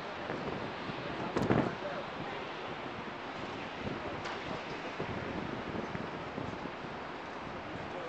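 Wind rushing across the camcorder's microphone as a steady noise, with one brief louder thump about a second and a half in.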